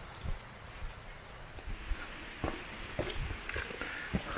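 Footsteps of someone walking up a wet tarmac lane, a short thump about twice a second, over a low rumble.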